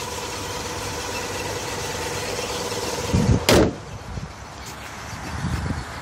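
A 1986 Chevrolet Caprice's stock 5.7-litre V8 idling low and smooth, with no knocking or ticking and a thin steady whine over the idle. About three seconds in, the hood is shut with a loud thump. The idle goes on more quietly after that.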